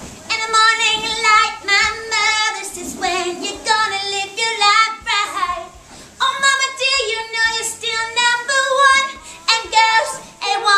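A woman singing in a high voice, in a run of phrases with short breaks between them.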